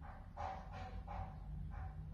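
A dog barking faintly, four short barks within about a second and a half.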